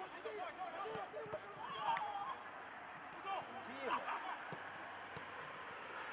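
Faint shouts of football players calling to each other across the pitch, heard over open-air background noise, with a few soft thuds.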